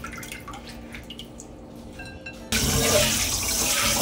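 A few faint small clicks, then about two and a half seconds in a kitchen tap is turned on and water runs steadily into a stainless steel bowl in the sink.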